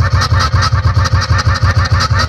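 Loud music with a deep, pulsing beat and a fast, even rattle above it, about ten strokes a second.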